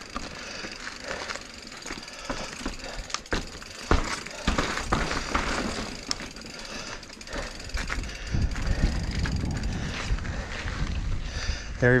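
Giant Reign Advanced Pro 29 enduro mountain bike rolling over slickrock: tyre noise with scattered knocks and rattles from the bike, and a low rumble building about eight seconds in.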